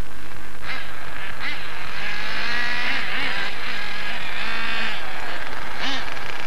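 Several 3.5 cc glow-plug engines of 1/8-scale radio-controlled racing cars buzzing and revving together, the pitch wavering up and down, busiest in the middle.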